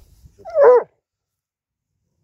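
Basset hound giving one short, loud bark about half a second in while digging at a ground squirrel's burrow, after faint scratching in the dirt.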